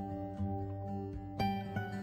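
Soft, calm instrumental background music with held notes, a new note sounding about a second and a half in.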